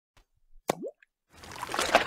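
A single water-drop plop, a short bloop that dips and then rises in pitch, followed about half a second later by a rush of noise that swells to its loudest at the end: an intro sound effect.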